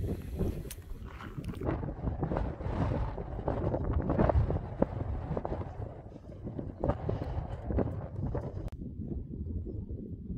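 Wind gusting across the microphone, an uneven buffeting rumble. About nine seconds in it changes abruptly to a lower, duller rumble.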